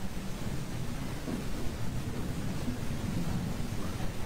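Steady low rumble of courtroom room noise picked up by the live-stream microphone, with faint indistinct murmuring now and then.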